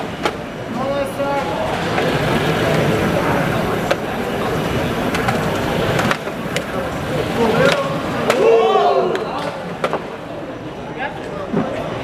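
Indistinct voices of people talking, loudest near the start and again around three-quarters of the way through, over a steady background hiss. Several sharp clicks are scattered through it.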